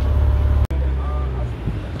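Low, steady rumble of a car engine on a street, broken by an abrupt cut about two-thirds of a second in, after which it carries on a little quieter under faint voices.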